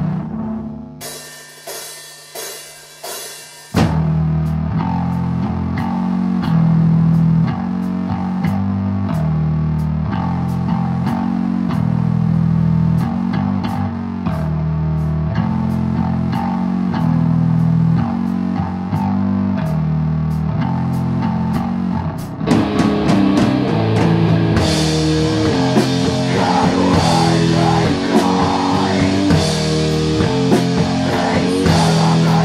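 Sludge/doom metal band music with fuzz-distorted electric guitar, bass and drums. A few struck chords ring and die away, then the full band comes in with a heavy, loud riff about four seconds in. About two-thirds of the way through, the sound gets brighter and busier, with more cymbal.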